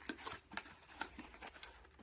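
A small cardboard shipping box being picked up and handled: a few faint taps and light rustles of the cardboard.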